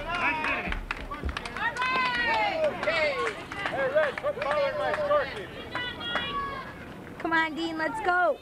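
People shouting and calling out in raised, high-pitched voices, one call after another, with a few sharp clicks about a second in.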